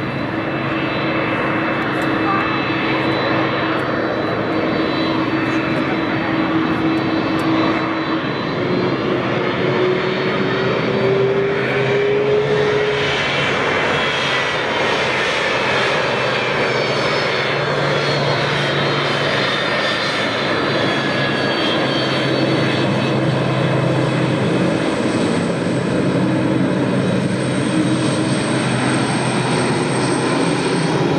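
Jet engines of a Boeing 767-300 freighter running at taxi power as it rolls past. A steady whine that rises slightly in pitch about ten seconds in, with higher whistles that fall in pitch as the aircraft goes by.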